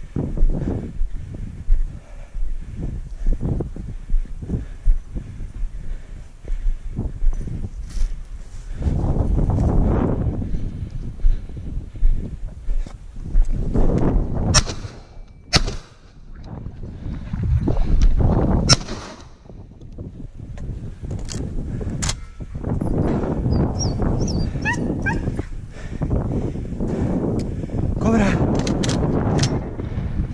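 Footsteps on loose stones, about one step every second or less for the first eight seconds, then longer stretches of rustling as the walker pushes through low scrub, with a few sharp clicks. A dog sounds near the end.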